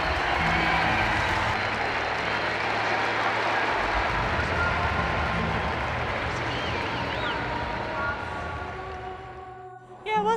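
Stadium crowd cheering during a track race, under background music with low held bass notes; it all fades out near the end.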